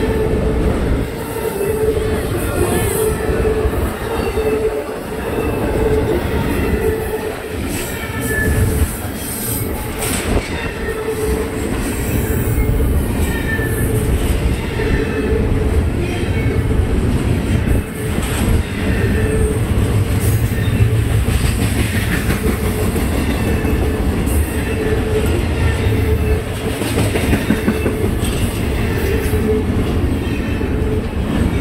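Double-stack intermodal freight cars rolling steadily past at close range: a continuous heavy rumble of steel wheels on rail, with clicking over rail joints and intermittent high wheel squeal.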